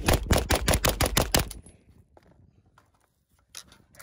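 Grand Power Stribog SP9A1 9 mm carbine firing a rapid string of about a dozen semi-automatic shots, about seven a second, stopping about a second and a half in. A single small click follows near the end.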